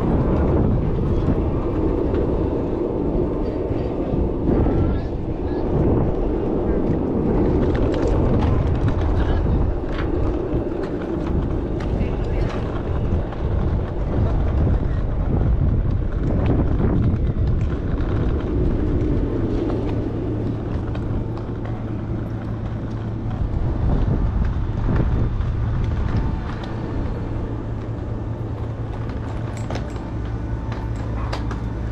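Airport ramp noise: a continuous low mechanical rumble with wind, indistinct voices and scattered clatter. A steady low hum joins about two-thirds of the way in.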